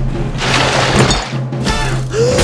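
Trailer score with a crash-and-shatter sound effect in the first second, and a brief laugh.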